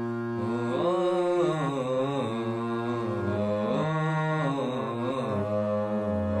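Harmonium playing the song's melody in sustained reed notes, the chords changing every second or so.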